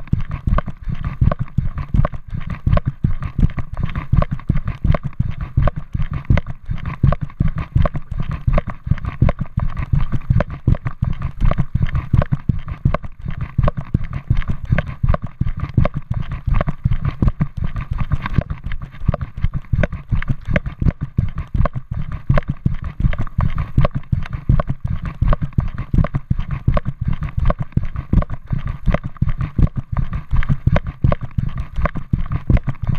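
Quick, regular thumps of footsteps and camera jostling as a camera is carried along a path on foot, with a faint steady whine underneath.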